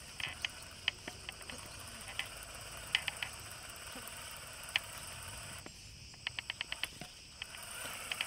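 Scale RC crawler crawling, with scattered light clicks and ticks over a faint steady background and a quick run of about six ticks near the end.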